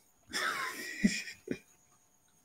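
A person's wheezy, breathy exhale lasting about a second, followed by two short voiced sounds.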